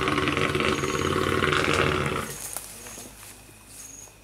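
Wild Asian elephant roaring loudly, a rough, noisy call that stops a little over two seconds in.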